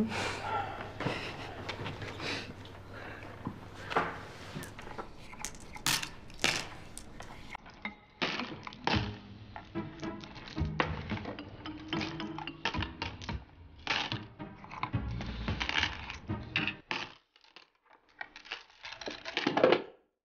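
Go stones clicking and clacking in irregular strokes as the players handle the stones on the board and in the bowls after the game, over soft background music. The sound drops almost to silence for a moment near the end before a few more clacks.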